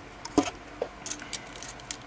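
Small hard plastic parts of a 1/100 Master Grade Gundam model kit clicking and rattling as they are handled and pulled out of the figure, with one sharper click a little under half a second in and a few lighter ones after.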